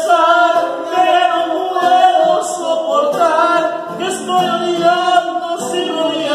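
A voice singing long, wavering notes, with a nylon-string acoustic guitar strummed along.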